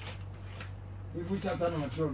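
Thin Bible pages being leafed through by hand, a light papery rustle, over a steady low electrical hum. A man's voice starts quietly about halfway through.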